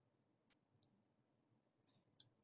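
Near silence with three faint, brief clicks: one about half a second in, one a little later, and one just before the end.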